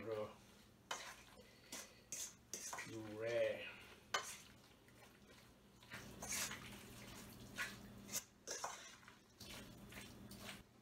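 Chicken pieces being mixed by hand with a puree in a stainless steel mixing bowl: wet stirring with scattered clinks and knocks against the metal bowl. A short hum or murmur of a man's voice about three seconds in.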